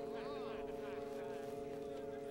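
Film score holding one steady low chord, with faint background voices rising and falling over it.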